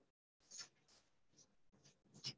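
Near silence: a faint low hiss with a few very faint brief sounds, cut by a moment of complete dead silence near the start.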